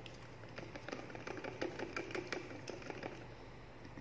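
Plastic spray bottle with a trigger sprayer being shaken to mix the liquid inside: a faint, quick run of small clicks and rattles.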